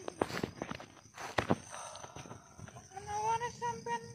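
Scattered clicks and rustles of movement on the ground, then, near the end, a person's voice in drawn-out, even-pitched tones.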